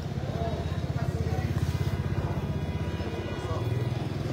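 Ambulance van's engine idling close by, a steady low pulsing rumble that swells slightly in the middle; faint voices behind it.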